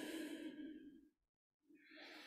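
A faint, long breathy exhalation through the nose or mouth from a person holding a yoga pose, cut off abruptly about a second in. A moment of dead silence follows, then faint room noise.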